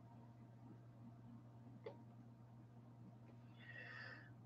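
Near silence: room tone with a faint, steady low hum and one soft click a little under two seconds in.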